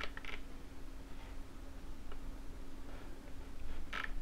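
Computer mouse clicking: two quick clicks at the start, a few faint ticks, then a sharper click at the end, over a steady low hum.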